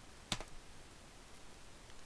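A single sharp computer click about a third of a second in, then a fainter tick, over quiet room tone.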